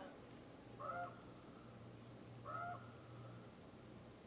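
Two short orca (killer whale) calls heard underwater through a hydrophone, about a second and a half apart, each a brief rising-then-level cry, over a steady low hum.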